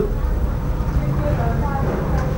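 Steady low background rumble, with faint voices about a second in.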